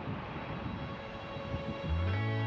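Shinkansen bullet train running at speed on an elevated line: a steady rushing noise with an uneven low rumble. Music with a deep bass note comes in near the end.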